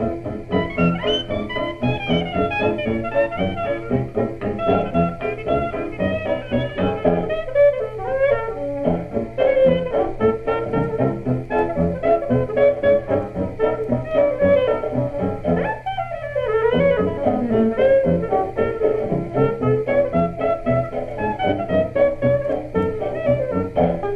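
A 1928 New Orleans jazz band record playing a fox trot: trumpet, clarinet, saxophone, piano, banjo, string bass and drums together at a steady beat. The sound has the narrow, dull top of an early electrical 78 rpm recording.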